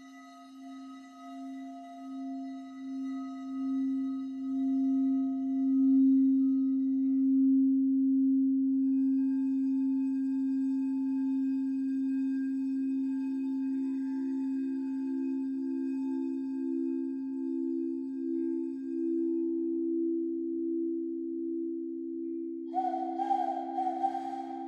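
Frosted quartz crystal singing bowls rimmed with a wand: a low, steady hum swells with a slow pulsing wobble, and a second, slightly higher bowl joins about ten seconds in and builds the same way. Near the end a breathy, wavering whistle-like tone starts, blown into cupped hands.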